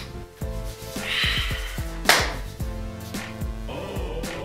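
Background music with a steady beat, with a sharp, loud hit about halfway through.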